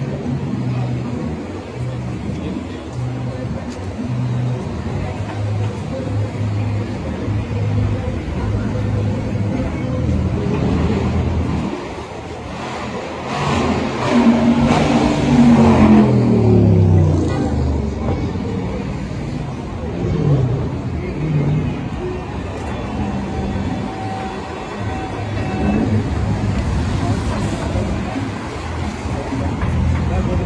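Busy city street traffic with people talking nearby. About thirteen seconds in, a car passes close by, the loudest sound of all, its engine note falling as it goes; a second, fainter falling engine note follows about twenty seconds in.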